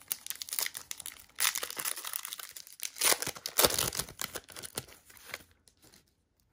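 Foil trading-card pack wrapper being torn open and crinkled. The crackling comes in bursts, loudest about a second and a half in and again around three to four seconds, and fades out near the end.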